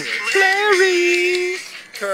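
A person's voice holding one long, drawn-out note. It bends in pitch at first, then stays steady for about a second before stopping.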